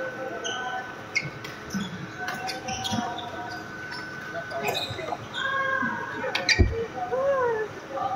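Badminton rackets striking shuttlecocks in scattered sharp clicks, with background voices and one heavy thump about two-thirds of the way through.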